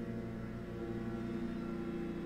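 Leaf blowers running, a steady low drone with no break.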